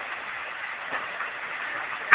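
Steady hiss of background recording noise in a pause between a man's spoken phrases, with no speech.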